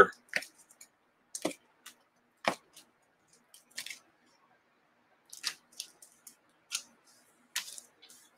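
A few light, sharp clicks and taps, unevenly spaced about a second apart, from small objects being handled at a desk, with a quiet room between them.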